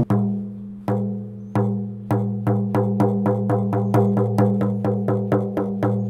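13-inch reindeer rawhide frame drum being beaten. Each beat rings with a low tone. A few spaced beats are followed, from about two seconds in, by a quick even run of about five beats a second.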